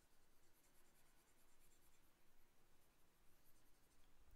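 Near silence with faint stylus strokes on a drawing tablet as digital pen marks are erased.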